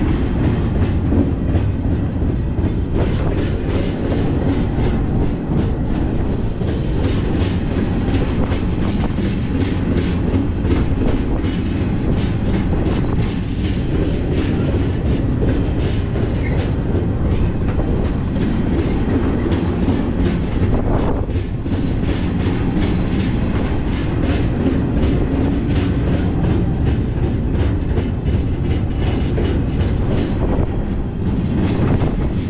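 A moving freight train heard from the end platform of a double-stack intermodal well car: a steady loud rumble with wheels clicking and the car rattling and knocking throughout.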